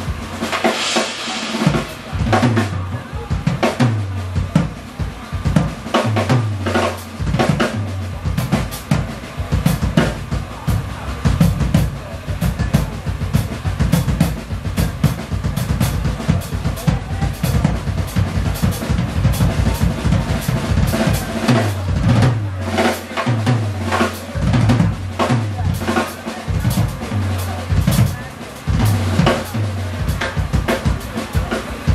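Live band playing, led by a busy drum kit: fast kick, snare and cymbal hits over low, repeated bass notes.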